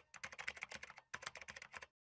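Computer-keyboard typing sound effect: rapid key clicks, about ten a second, with a short break about a second in. It stops just before the end.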